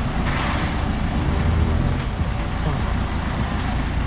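Mahindra Thar's engine running at low, steady revs as the 4x4 creeps down a steep sandy slope.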